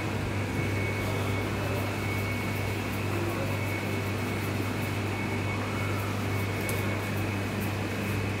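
Steady low machine hum with a faint, steady high whine above it, typical of kitchen ventilation or refrigeration running, with a few light clicks near the end.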